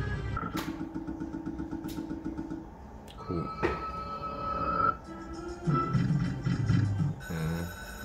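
Slot machine electronic game sounds: a rapid run of short beeps, about seven a second, as the feature win is counted into the credit bank, then a long held tone and a short jingle. About seven seconds in, new looping music starts as a fresh round of ten free spins begins.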